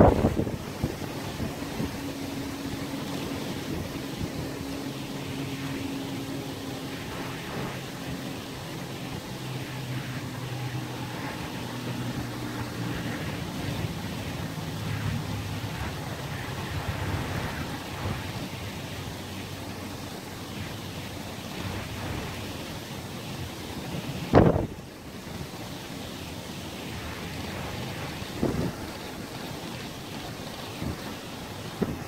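Wind blowing over the microphone above open sea water, with a sharp gust buffeting the microphone at the start and another about 24 seconds in. A faint low drone runs under it through the first half.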